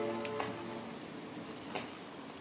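Turntable stylus tracking a vinyl single as the song's last notes fade out in the first half second, leaving faint surface hiss with a few sharp clicks, two of them about a second and a half apart.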